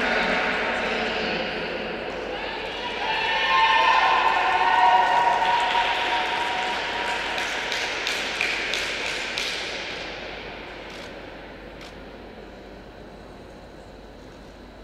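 Spectators cheering and clapping, with several voices calling out a few seconds in; the noise dies away over the last few seconds.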